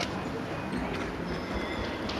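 Jet airliner's engines during the landing roll, a steady rushing roar with a faint high whine in the second half.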